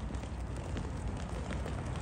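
Steady low rumble and hiss of wind on the microphone, with faint scattered clicks of sheep's hooves on the pavement.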